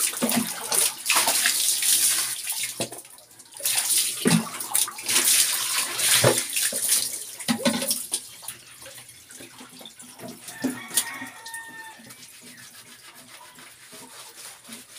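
Water poured over a person bathing and splashing heavily, in two long pours that stop about seven and a half seconds in; after that only quieter small splashes and movement.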